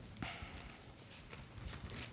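Pages of a Bible being turned and handled by hand: a short papery rustle just after the start, then faint scattered taps and clicks.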